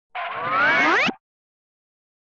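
A short cartoon music sting, several tones sweeping upward together for about a second, that cuts off abruptly.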